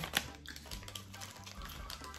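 Hard candies being sucked, with a few small clicks of candy against teeth, mostly in the first half-second, over a low steady hum.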